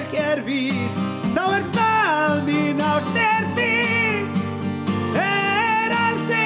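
A man singing a slow melody with held, gliding notes, accompanied by a strummed acoustic guitar.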